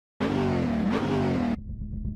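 Car engine revving, a sound effect laid over an animated tachometer, its pitch dipping and climbing again about a second in; it cuts off suddenly about a second and a half in, leaving a low rumble.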